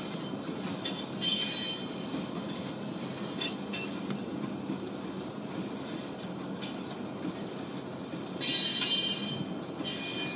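Freight train of covered hopper cars rolling past: a steady rumble of steel wheels on rail with scattered clicks, and high-pitched wheel squeals about a second in and again near the end.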